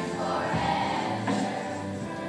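A children's choir singing together, holding long notes.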